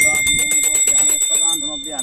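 Small brass puja hand bell rung rapidly and continuously, a steady high ringing.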